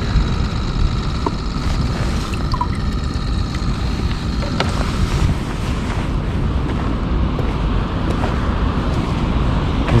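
Steady rush of river water flowing hard below a dam, with wind buffeting the microphone.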